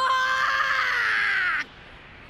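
A high-pitched voice holding one long wailing cry that sinks slightly in pitch and cuts off suddenly about one and a half seconds in.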